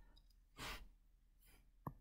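Near silence: a soft breath out about a third of the way in, and one short click near the end.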